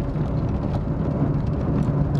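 Steady in-cabin drone of a Fiat Cinquecento being driven: the engine running at a constant pace under road and tyre noise, with no gear change or other event.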